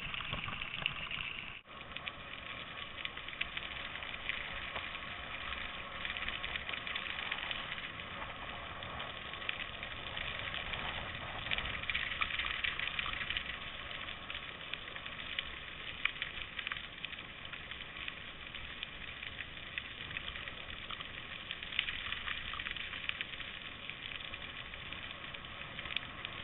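Bicycle tyres rolling over a gravel trail: a steady crunching crackle of small clicks, with a brief drop about two seconds in.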